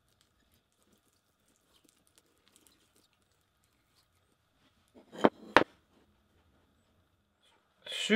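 Mostly quiet, with faint scratches of a glue brush on wood. About five seconds in come two sharp knocks, a third of a second apart, as the glued wooden pieces are handled on the workbench.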